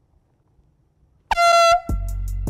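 An air horn blasts once, about a second and a quarter in: a loud, steady, high-pitched tone lasting about half a second.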